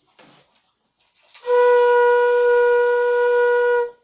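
Concert flute played by a beginner: one steady held note, Re, lasting about two and a half seconds with some breath noise, starting about a second and a half in and stopping just before the end.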